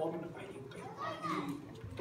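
Speech: a man preaching.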